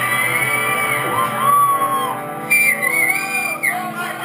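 A rock band playing live in a hall, with shouting voices over the music and held notes wavering in pitch.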